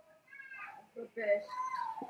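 A girl's faint, high-pitched voice speaking quietly through the video chat, hard to make out.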